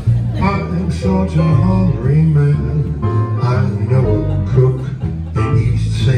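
Live jazz combo playing: an upright bass line and piano accompanying a male vocalist singing into a microphone.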